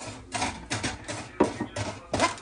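Wooden spoon stirring and scraping semolina in a non-stick frying pan: a quick run of irregular scraping strokes. The semolina is being toasted in butter until golden for halva.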